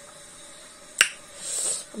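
A single sharp click about a second in, followed by a brief high hiss.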